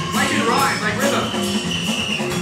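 Punk rock band playing live: electric guitar, bass and drums with a steady beat, and a man singing into the microphone in the first second or so. Heard as an audience recording, with the room's echo and crowd around it.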